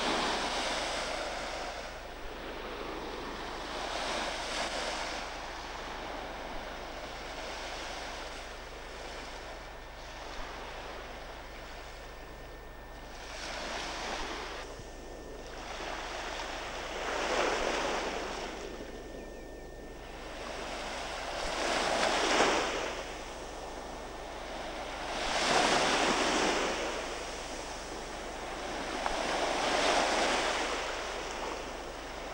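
Small sea waves breaking and washing up a sandy shore, each wash of surf swelling and fading every few seconds, the surges louder in the second half.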